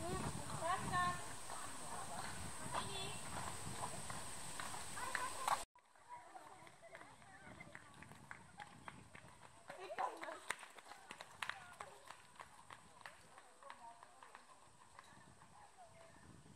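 Indistinct background voices that cut off abruptly about six seconds in. After that comes a quieter stretch with scattered sharp clicks and knocks.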